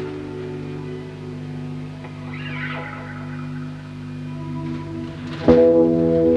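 Electric guitar through an amplifier: a chord rings on and slowly fades, then a new chord is struck about five and a half seconds in and rings out louder.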